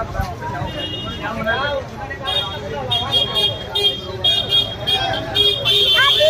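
People talking and calling out on a busy street, with a high-pitched vehicle horn tooting repeatedly in short blasts from about two seconds in, louder near the end.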